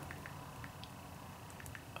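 Faint, scattered light clicks of calculator keys being pressed while working out a division, about eight taps over quiet room tone.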